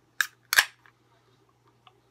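Aluminium can of carbonated homebrew beer being cracked open at the pull tab: two sharp snaps about a third of a second apart, the second longer and louder.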